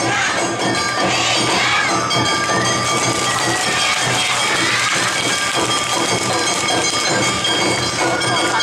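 Awa Odori festival band music playing steadily as a dance group passes, mixed with the noise of a large crowd.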